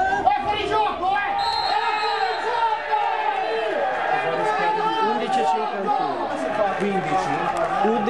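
Many voices talking and shouting over each other, a crowd's chatter. About a second and a half in, a steady high tone sounds for about a second.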